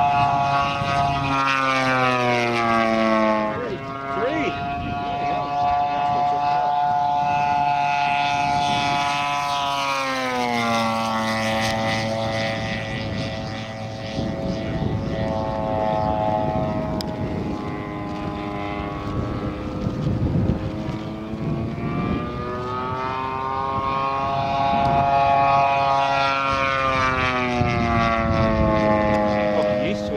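The 3W 70cc petrol engine of a 1/5-scale RC SBD Dauntless model plane, running at speed as the plane flies past. The engine note drops in pitch with each fly-by, about two seconds in, around ten seconds in and again near the end, with a rougher, noisier stretch in the middle.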